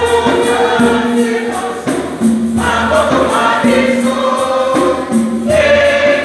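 A women's choir singing a hymn together, in phrases with short breaths between them, over a steady beat of light percussion.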